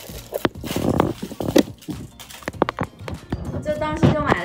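Clear plastic cellophane sleeve crinkling and crackling as it is pulled off a foil-wrapped chocolate rose, in a string of irregular sharp crackles with a quick run of clicks near the end.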